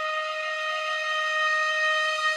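Music: a single long note held steadily on a wind instrument.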